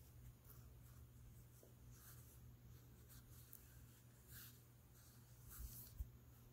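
Faint rattling patter of dried basil being shaken from a glass spice jar onto raw pork, several short shakes spread out, over a low steady hum.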